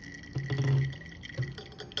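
Frothy blended lemonade poured from a glass blender jar through a fine metal mesh strainer into a jug, liquid splashing and dripping through the sieve.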